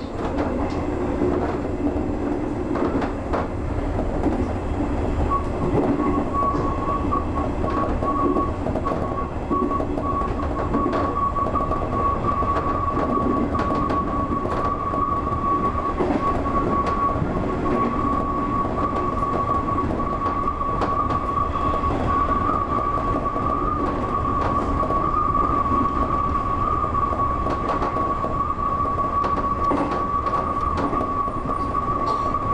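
JR 201 series electric train running at speed, heard from the driver's cab: a steady rumble of wheels on rail with scattered rail-joint clicks. A steady high whine sets in about five seconds in and holds.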